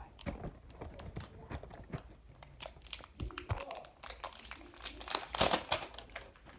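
Smartphone packaging handled close to the microphone: crinkling and rustling with scattered small clicks and taps, loudest about five seconds in.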